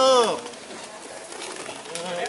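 A man's short shouted call, rising then falling in pitch, at the very start, luring a racing pigeon down to the handler's perch. It is followed by quieter outdoor background with a few faint ticks.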